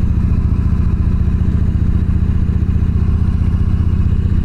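Yamaha V-Star 1300's V-twin engine running steadily at low road speed, a low, even note that neither rises nor falls.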